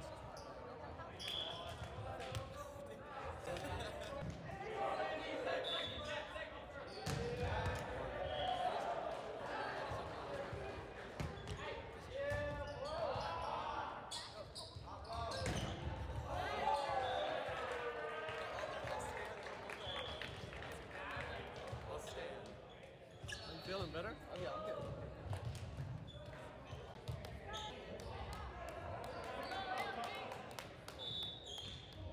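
Indoor volleyball play in an echoing gymnasium: the ball is struck and bounces in sharp, separate thuds, with players' shouts and chatter around them.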